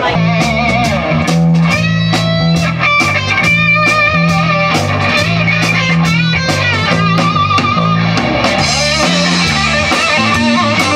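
Live rock band playing: electric guitar lead lines held and bent over a steady bass line and drum kit beat, amplified through stage speakers.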